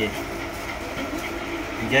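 Indistinct background voices over a steady low hum of room noise.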